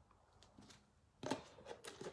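A few short clicks and rustles, starting just over a second in, from hands taking moulding material out of a lidded container.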